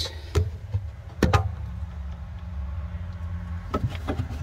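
A few sharp clicks and knocks of plastic hose and plumbing fittings being handled, over a steady low hum.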